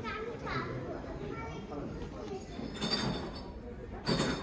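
Indistinct background chatter of people, with a child's high voice rising and falling near the start.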